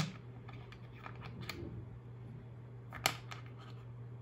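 A few sharp clicks, the loudest about three seconds in, over a steady low hum.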